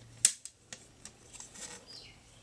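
Plastic CD jewel case being opened by hand: one sharp click about a quarter second in, then a few faint clicks and soft handling of the plastic.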